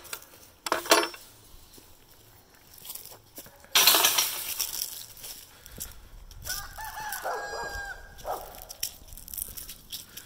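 A rooster crowing once, beginning about six and a half seconds in. Sharp knocks near the start and a loud rustle around four seconds come from walking with the phone.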